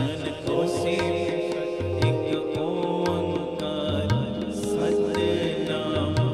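Shabad kirtan music: harmoniums playing a held, droning melody over tabla, whose deep bass strokes recur throughout.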